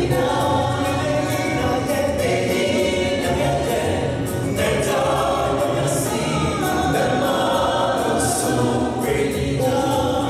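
Mixed group of men's and women's voices singing a gospel song together, continuously.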